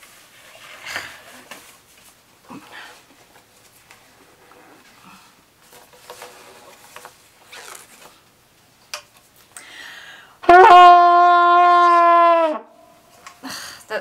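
Faint rustling and clicks of a rubber washing-up glove being stretched onto a trumpet, then the trumpet blown through the glove: one loud held note of about two seconds that sags in pitch as it stops.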